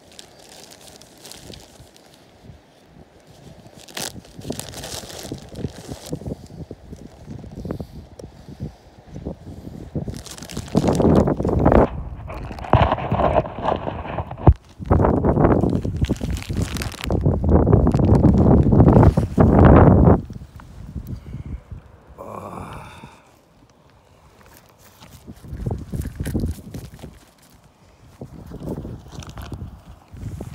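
Loose shale rubble crunching and rustling close to the microphone as things are handled and moved about on it, with a few sharp knocks; the noise comes in long loud stretches through the middle and dies down near the end.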